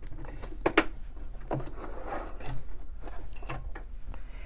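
A home sewing machine being handled after a basting seam: several sharp clicks about a second apart, with the rub of cotton fabric as the stitched strip is drawn out from under the presser foot.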